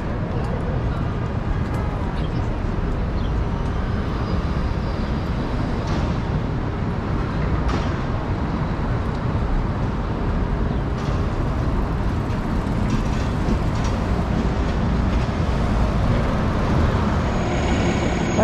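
Steady city street traffic: a low rumble of passing cars and buses. It grows a little louder near the end as an articulated city bus comes close.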